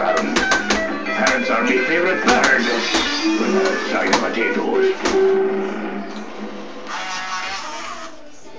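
Gemmy Drake animated pirate skeleton prop playing a recorded clip through its small built-in speaker: guitar-led music with a voice, thin and without bass, fading away over the last two seconds.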